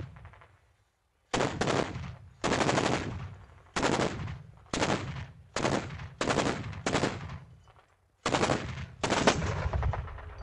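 ZSU-23-4 Shilka self-propelled anti-aircraft gun firing its 23 mm autocannons in short bursts. There are about nine bursts after a brief pause at the start, each a fast rattle of shots that trails off in echo.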